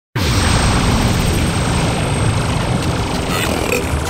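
Loud, dense rushing noise with a deep rumble underneath, starting abruptly, like the sound-effect opening of a radio show's intro.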